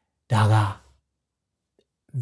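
A man's voice speaking one short word, about half a second long, in an otherwise silent stretch.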